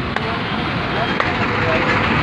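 Several people chatting over a steady rumble of vehicle noise, with a sharp click about a fifth of a second in and another faint one a little past a second.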